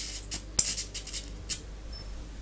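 Vacuum-tube Tesla coil's arc from its breakout point to a metal rod, hissing with a few sharp crackles, over a low steady hum.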